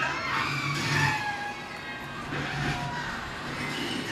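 Film soundtrack playing from a television: people screaming in a chaotic action scene, heard through the TV's speakers across the room.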